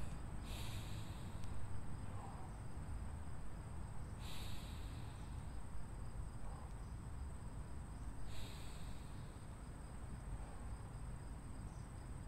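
A man taking three slow, deep breaths about four seconds apart, each heard as a short rush of air, in through the nose and out through the mouth. A thin steady high-pitched hum runs underneath.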